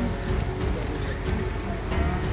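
Light rain pattering steadily.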